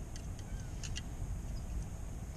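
A few faint clicks and knocks as fishing gear is handled, over a low steady rumble.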